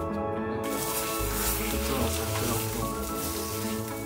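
Background music, with food sizzling in a frying pan starting about half a second in.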